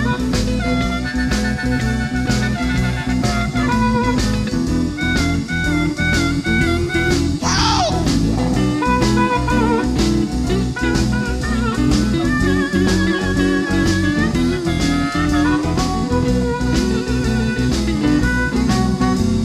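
Instrumental break of a boogie-woogie blues recording: a lead instrument plays wavering, bent notes over a steady shuffle beat of about three strokes a second and a busy low accompaniment, with a quick falling sweep about halfway through.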